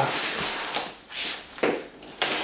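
Packing tape and cardboard on a shipping box being cut and torn open with a sharp knife, in a few short scraping, tearing strokes.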